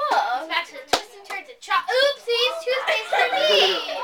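Children's voices talking, with a single sharp knock about a second in.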